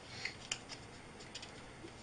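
Hand rubbing and sliding over a stack of paper sheets: a few short, faint rustles.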